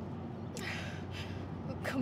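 A woman's breathy, gasping intakes of breath as she cries, two of them about half a second apart, over the steady low hum of a car's interior on the road.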